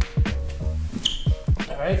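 Hip-hop backing music with a beat of deep kick drums that drop in pitch, about three a second, over a sustained bass line.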